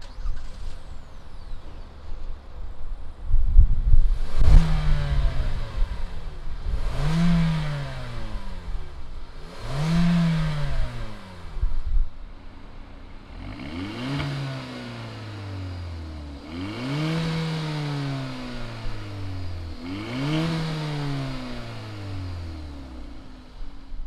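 Two Hyundai Elantra GT 1.6-litre four-cylinder engines, one naturally aspirated and one turbocharged, started and revved one after the other. The first comes in about 3 s in and is blipped three times. The second takes over around 13 s and is also revved three times, each rev climbing quickly and falling back slowly to idle.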